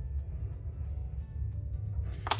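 Low background music, with faint scratching from a metal scoring tool roughening the edge of a clay slab.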